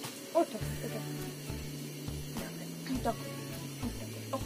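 A woman's soft voice soothing a baby: one short word near the start and a few faint short sounds later, over a low rumble.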